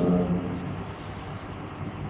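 A man speaking German trails off in the first half-second, then a pause in which only a steady low room hum is heard.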